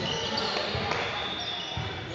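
A basketball being dribbled on a hardwood gym floor, a few dull bounces, under faint background voices.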